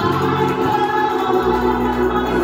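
A woman singing a gospel song into a handheld microphone through the church's sound system. The low backing drops out for the first second and a half, then returns.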